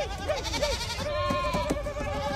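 Goats bleating: a run of short rising-and-falling calls, then one long wavering bleat starting about a second in.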